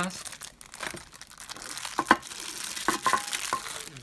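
Clear plastic wrapping crinkling and rustling as a stainless steel hip flask is pulled out of it. There are a few short sharp clicks and knocks between about two and three and a half seconds in.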